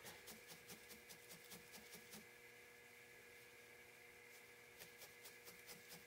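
Faint, rapid jabbing of a felting needle into a ball of wool, about five pokes a second, pausing for a couple of seconds in the middle.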